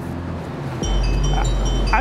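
Edited-in sound effect: a deep, sustained bass tone starts a little under a second in, joined about a second in by high, repeated chiming notes.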